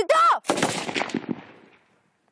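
A single rifle shot about half a second in, its echo trailing off over the next second and a half. A short voice comes just before the shot.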